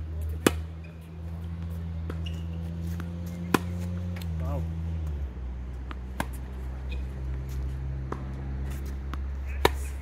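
Tennis ball struck by racket strings during a rally: sharp single pops roughly every three seconds, the loudest about half a second in and near the end, with fainter ball bounces between. A steady low hum runs underneath.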